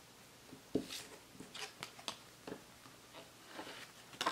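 Small handling sounds of nail-stamping tools: a sharp knock about three quarters of a second in, then a string of short clicks and brief scrapes as polish is brushed onto a metal stamping plate, the bottle capped and the plate scraped.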